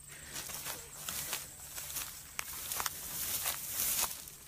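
Footsteps through dry leaf litter and weeds, an irregular rustling with scattered sharp crackles, getting louder toward the end.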